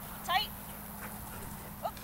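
A handler's short, high-pitched shouted cues to an agility dog, twice: one about a third of a second in and one near the end. A steady low hum runs underneath.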